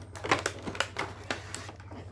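Clear plastic blister packaging crackling and clicking as it is slid out of a cardboard box, a series of sharp, irregular clicks.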